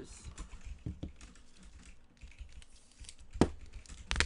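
Trading cards and plastic card holders being handled and set down on a table: scattered light clicks and taps, with one sharp click about three and a half seconds in.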